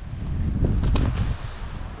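Wind buffeting the microphone: a low rumble with a hiss over it, swelling in the first second or so and easing off, with gusts ahead of an approaching storm.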